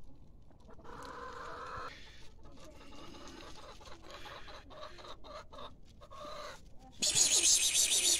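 Domestic chickens clucking quietly. About seven seconds in, a much louder, harsh, hissy sound breaks in and lasts over a second.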